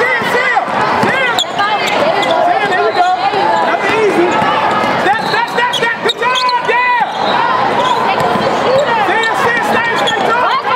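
Basketball game on a hardwood court: sneakers squeak over and over, the ball bounces, and players' voices call out.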